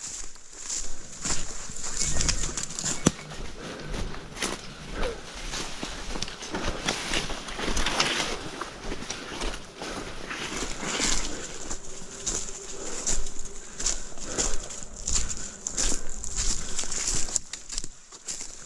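Footsteps crunching and swishing quickly through dry leaf litter and brush, with irregular rustles and knocks as the walker pushes through the undergrowth behind a tracking dog on a long lead.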